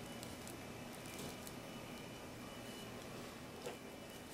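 Faint sounds of a kitchen knife scoring a raw boneless chicken thigh on a cutting board and of the meat being handled, with a few light clicks, the last one slightly louder near the end.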